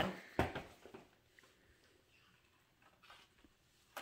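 Faint handling noises of a box being pulled out of a paper gift bag, with a short knock about half a second in, then only a few soft ticks and rustles.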